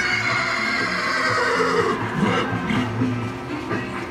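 A horse whinnying: one long call that falls in pitch over the first two seconds, over background music.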